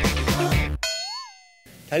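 Background music with a beat cuts off, and about a second in a bright metallic ding sound effect rings out, its tone bending up and back down before it fades away.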